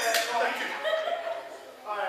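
Audience voices at ringside, people calling out and chattering, louder at first and dipping before picking up again near the end.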